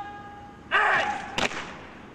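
A drill sergeant's short shouted word of command about a second in, followed half a second later by a single sharp crack of the guardsmen's drill movement made in unison.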